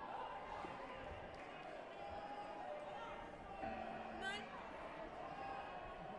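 Sports-hall ambience of murmuring voices with a couple of dull thumps. A little past halfway a short, steady low tone sounds as the round clock runs out, signalling the end of the round.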